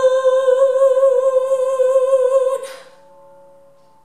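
Young female voice singing one long held high note with steady vibrato. The note ends about two and a half seconds in, leaving only a faint lingering tone.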